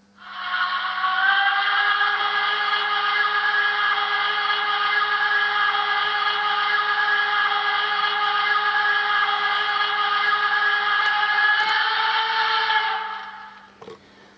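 Steam-whistle sound sample from the mfx+ sound decoder of a Märklin H0 class 01 steam locomotive model, played through the model's small loudspeaker. It is one long whistle of several tones at once over a hiss, rising slightly in pitch as it starts, held steady for about twelve seconds, then fading out near the end.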